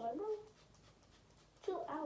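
A girl's voice making two short wordless vocal sounds, one at the very start and one near the end, each gliding up and down in pitch.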